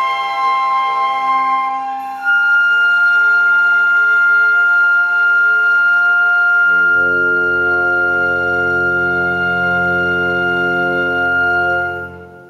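Small amateur orchestra of strings and woodwinds holding a long sustained chord, with low strings joining about two-thirds of the way through. The chord is cut off together at the very end and rings away in the hall.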